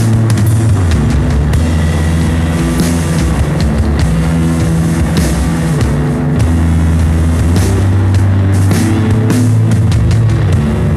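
Loud lo-fi garage rock with no vocals: distorted electric guitar and bass over drums, the bass line moving between notes every second or so.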